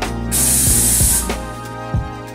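A burst of steam hiss from an espresso machine, high-pitched and about a second long, over background music.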